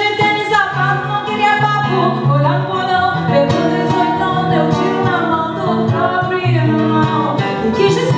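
Solo acoustic guitar, plucked notes, with a woman's voice singing over it in gliding lines.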